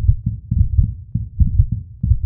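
Four overlapping heartbeats heard through a stethoscope: low, quick, unevenly spaced thumps, about five a second. They are a cat's own heartbeat together with those of the kittens she is carrying, the sign that she is pregnant.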